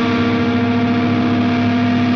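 Distorted Stratocaster-style electric guitar holding one long, steady note through effects.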